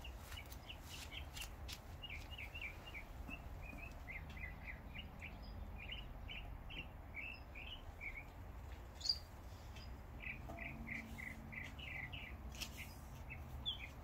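Small birds chirping in a quick series of short, high notes, several a second, with a brief click about nine seconds in.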